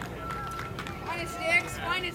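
Voices calling out from around the field, with two louder high-pitched shouts, one about one and a half seconds in and one near the end, over a faint steady high tone.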